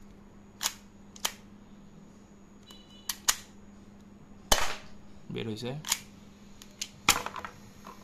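UDL TTI Combat Master manual toy pistol being worked by hand: a series of sharp mechanical clacks and snaps from its slide and action, irregularly spaced, the loudest about halfway through.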